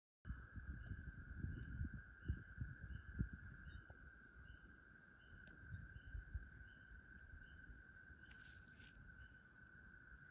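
Faint outdoor ambience: low gusts of wind buffeting the microphone, strongest in the first few seconds. Under it runs a steady thin high tone with faint short chirps repeating about twice a second, and a brief hiss near the end.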